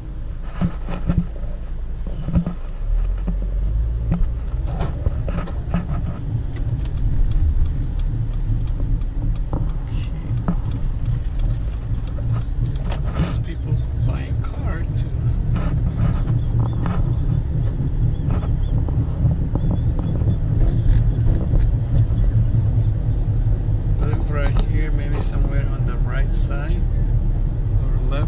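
Car cabin noise while driving: a steady low rumble of engine and road, with scattered light knocks and clicks from inside the car.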